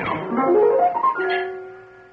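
Piano playing a quick upward run of notes that lands on a held chord about a second in, the chord ringing on and fading away.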